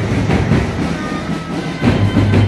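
Loud festival procession noise: drum beats over a steady low hum, in a dense, noisy mix.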